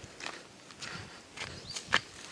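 Footsteps crunching on dry leaves and litter along a dirt path, a step about every half second, the loudest near the end.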